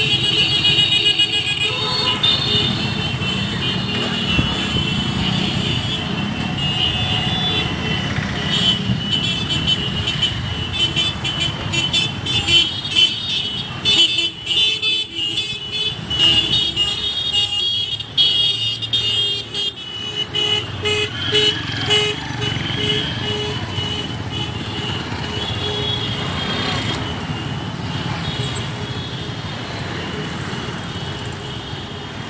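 A column of scooters and small motorcycles riding past at low speed, engines running, with horns tooting repeatedly over the traffic.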